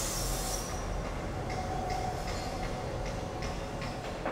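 A steady low mechanical rumble with a brief high hiss at the start. Faint irregular clicks follow, with a short high squeal a little past the middle.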